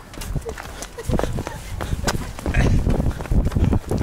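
Quick running footsteps on asphalt, a rapid uneven series of short knocks, over a low rumble on the handheld microphone.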